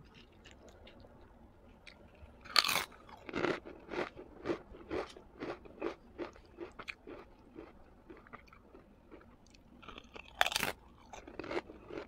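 A person biting into food close to the microphone, with a sharp bite about two and a half seconds in and another about ten seconds in, each followed by steady chewing at about two chews a second.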